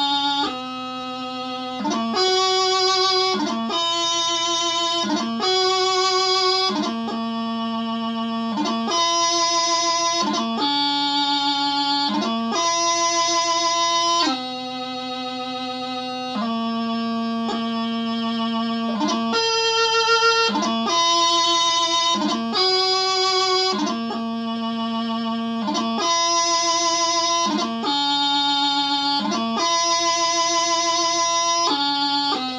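Highland bagpipe practice chanter playing a slow piobaireachd melody, without drones. Held notes of about one to two seconds step up and down the scale, each cut by quick grace notes.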